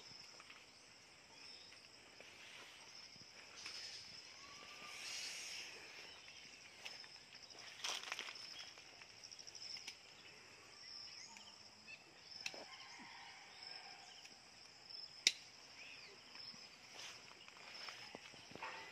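Faint field ambience: insects chirring in a steady high band, with scattered rustles and sharp clicks as a dragon fruit is cut from the cactus with hand pruning shears. The sharpest click comes about fifteen seconds in.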